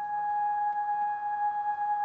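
A synthesizer holding one steady note.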